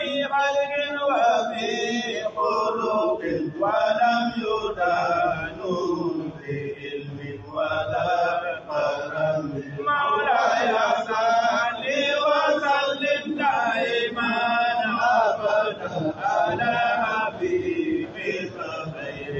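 A man chanting a recitation in a melodic voice through microphones, in phrases a second or two long with short pauses between.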